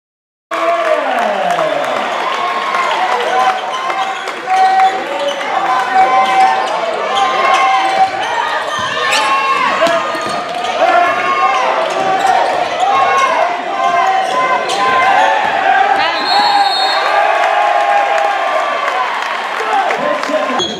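Live sound of a basketball game in a gym: the ball bouncing on the hardwood court amid many voices from players and crowd, all echoing in the hall. A brief high tone sounds about 16 seconds in.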